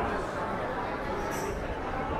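Indistinct talk of passers-by on a busy pedestrian street, with a short high hiss about one and a half seconds in.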